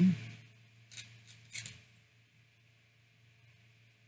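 A woman's short falling "mm" hum while eating a cookie, then a few brief crackly mouth noises of chewing about one to one and a half seconds in, over a faint steady low hum.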